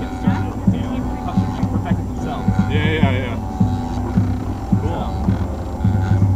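MakerBot dual-extruder 3D printer printing: its stepper motors whine in quickly shifting pitches as the print heads move, over a steady hum, with a brief higher buzz about three seconds in.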